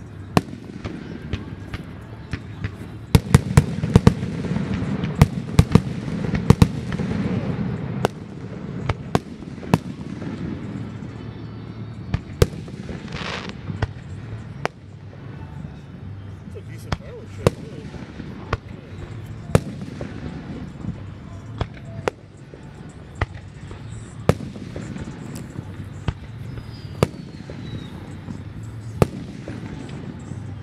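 Aerial firework shells bursting in a string of sharp reports. They come thickest between about three and eight seconds in, with a rolling rumble, then as single bangs a second or two apart.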